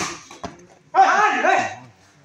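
A badminton racket smashes the shuttlecock with a sharp crack, and a lighter hit follows about half a second later. About a second in comes a loud, wavering, pitched cry lasting most of a second.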